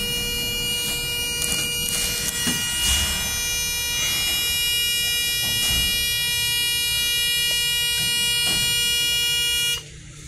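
Otis elevator car's buzzer sounding one steady, loud tone while the car door slides shut, with a few short knocks along the way; the buzzer cuts off suddenly near the end.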